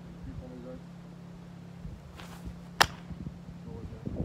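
A steady low hum with faint voices in the background. A single sharp click or smack comes a little under three seconds in.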